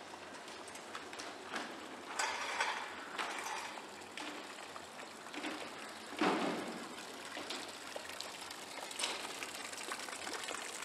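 Water trickling from a stone fountain's spout into its basin, a steady faint splashing, with scattered clicks and knocks over it; the loudest knock comes about six seconds in.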